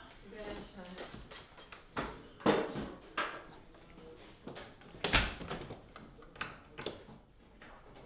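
Scattered knocks and clicks, the loudest about five seconds in, with low voices in the background.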